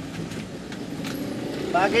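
Steady street ambience with a vehicle hum, and a voice beginning just before the end.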